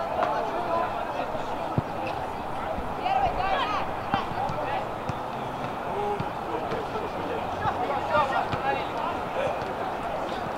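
Footballers shouting and calling to each other across an outdoor pitch, with a couple of sharp knocks of the ball being kicked.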